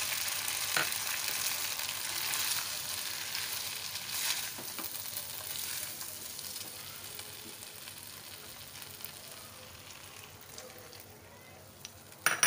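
Chilli chicken sizzling in a non-stick wok as cornflour slurry is stirred in with a silicone spatula, with a couple of short knocks of the spatula against the pan. The sizzle gradually dies down.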